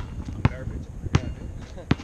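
Basketball being dribbled on a paved outdoor court: four sharp bounces in two seconds, the first two closer together.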